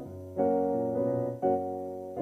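Piano chords played slowly on a keyboard, each chord left to ring and fade, with a new chord struck about half a second in and another about a second and a half in.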